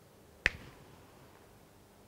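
A single short, sharp click about half a second in, then quiet room tone.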